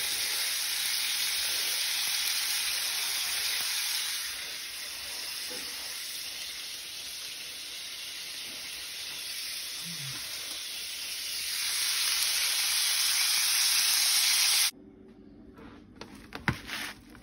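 Seasoned shrimp and chicken sizzling in oil in a frying pan. The sizzle gets quieter about four seconds in, grows louder again later, and cuts off suddenly shortly before the end.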